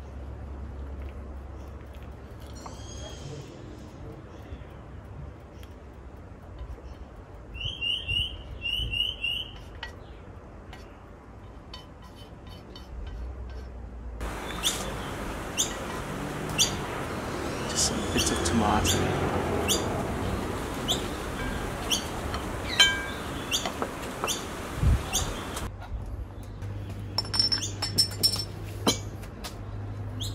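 Outdoor ambience with a bird giving a quick series of chirps about eight seconds in. From about halfway, a louder stretch of steady hiss with sharp clicks runs for about ten seconds.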